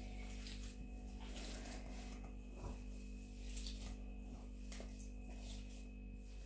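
Hands kneading raw mixed minced meat in an enamel pot: faint, irregular soft squelches over a steady low hum.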